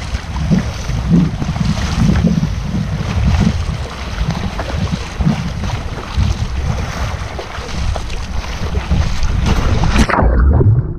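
Surfski at sea under paddle: wind buffeting the microphone with a heavy rumble, water rushing past and irregular splashes as the paddle blades enter the water.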